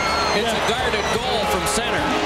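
Hockey TV broadcast sound: commentators' voices over steady arena background noise.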